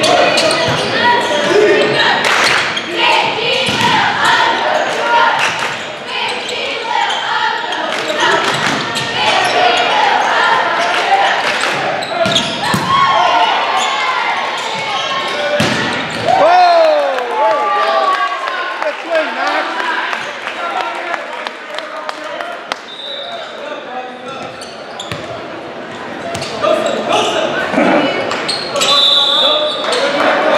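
Volleyball game echoing in a gymnasium: players and spectators shouting and cheering, with sharp knocks of the ball being struck. A short, high referee's whistle sounds near the end.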